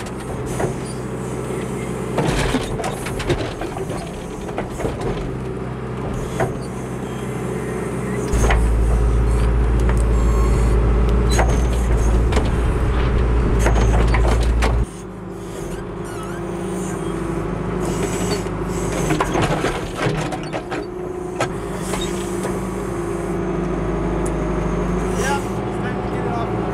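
John Deere 310SE backhoe's four-cylinder diesel engine running under load as the bucket works a loosening maple stump, with scattered cracks and knocks of roots and earth. A deeper, louder rumble from about eight seconds in breaks off abruptly near the middle.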